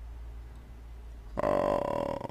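A man's drawn-out, creaky hesitation sound "eh" starts about one and a half seconds in. Before it there is only a low steady hum.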